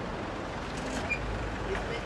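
A motor vehicle engine running steadily as a low rumble, with outdoor noise around it.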